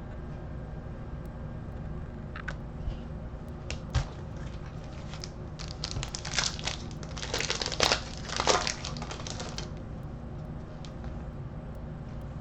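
Trading-card pack wrapper crinkling in a run of bursts as it is torn open and handled, loudest just past the middle, after a few light clicks.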